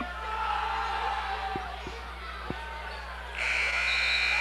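Crowd murmur in a gymnasium with three basketball bounces on the hardwood floor, then, about three seconds in, a loud, steady, high-pitched signal tone lasting a little over a second during a free-throw stoppage.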